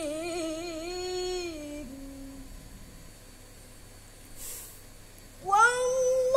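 A boy's voice chanting Quranic recitation in the melodic tilawah style. He holds a long note with a wavering ornament that falls in pitch and fades away about two seconds in. After a pause with a quick breath, he starts a new phrase loudly on a higher pitch near the end.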